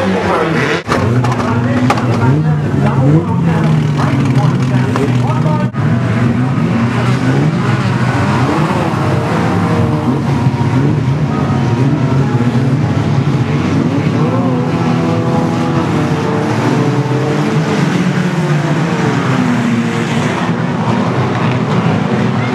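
Several banger-racing cars' engines running and revving together, their pitches rising and falling as the drivers accelerate and lift off, with two brief dropouts in the sound about a second in and near six seconds.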